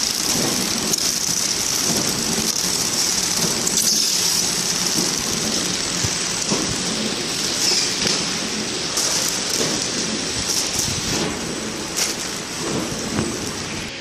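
KT 450D horizontal flow-wrap packing machine running steadily as it wraps and seals trays of green chili peppers in film. It makes a continuous rain-like hiss, with scattered sharp clicks that come more often in the second half.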